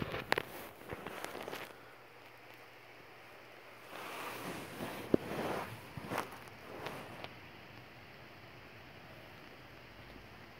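Soft rustling and handling noise close to the microphone, from a hand on a dog's head and fur against bedding. A few sharp clicks come in the first two seconds, and another patch of rustling comes about four to seven seconds in.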